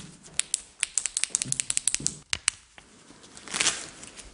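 A rapid, irregular run of sharp clicks and taps, then a short rushing noise near the end.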